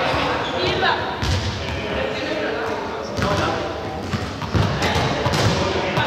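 A ball bouncing on a sports-hall floor, several separate thuds, with people talking in the background.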